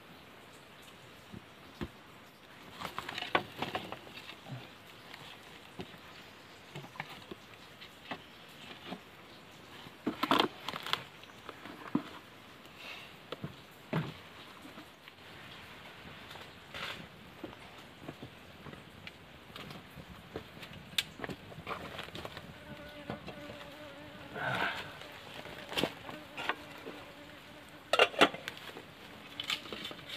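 A buzzing insect, humming steadily for a few seconds late on, among scattered knocks and clicks of sticks and charcoal being handled at a small wood fire.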